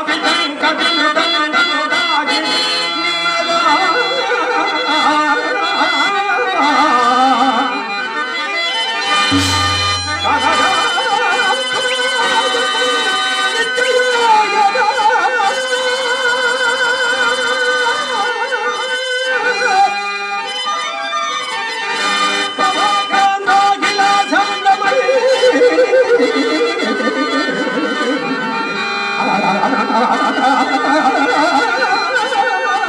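Harmonium playing held notes and melody under a man singing a drawn-out Telugu stage-drama verse (padyam) with wavering, ornamented notes.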